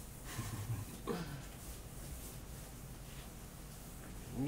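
Quiet room tone with faint rubbing of a cloth eraser wiped across a whiteboard, and a brief low murmur in the first second.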